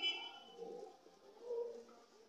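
Faint bird calls: two short, low calls, about half a second in and near the end, just after a brief higher-pitched sound at the very start.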